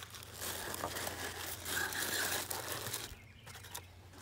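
Tissue paper crinkling and rustling as it is pulled open by hand, busiest in the middle and thinning out near the end.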